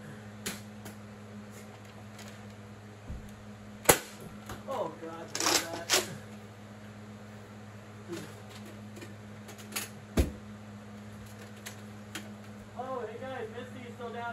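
Sporadic sharp clicks and knocks from Nerf blasters firing and foam darts striking objects, with the loudest about four seconds in and again about ten seconds in, over a steady low hum.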